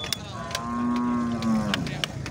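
A cow moos once, a long call of about a second and a half that dips slightly at its end. Around it come a few sharp knocks of a hammer striking the back of a knife that is being driven through a cow's horn.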